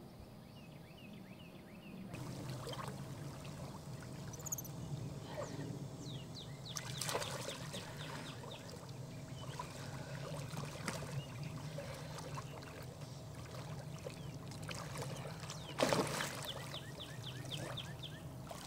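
Water splashing and lapping as a man and a capuchin monkey swim through lake water, with birds chirping in the background. Two louder splashes come about seven seconds in and near the end.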